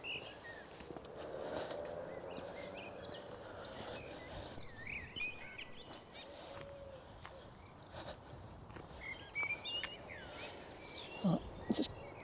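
Birdsong from a European robin and a common blackbird: short whistled and warbling phrases, one every second or two. A faint steady hum sits underneath in the first half.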